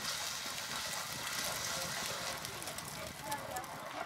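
Injera batter sizzling as it is poured onto a hot griddle over a fire, a steady hiss, with faint voices in the background.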